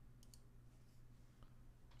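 Near silence: a steady low hum with a few faint computer-mouse clicks, two close together about a quarter second in and one more around the middle.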